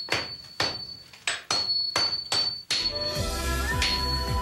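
Hammer blows on red-hot tamahagane steel on an anvil, about seven sharp strikes roughly two a second, forging the block so that its impurities fly off as sparks. Music comes in about three seconds in.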